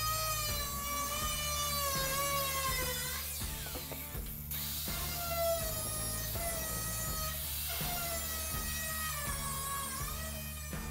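Cordless angle grinder with a cutoff wheel cutting through the rusty sheet steel of a 1934 Chevy truck cab. Its whine sags in pitch as the wheel bites, stops for a moment about three seconds in, then starts again. Background music plays underneath.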